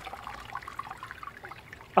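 Stripping liquid quietly trickling and dripping back into a plastic bucket from a lifted stainless steel mesh basket of circuit-board scrap, as the basket is worked up and down to agitate it.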